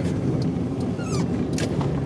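1995 Defender 90's swapped-in 4.0 V8 engine running steadily at low speed, heard from inside the cab, with a brief falling squeak about a second in.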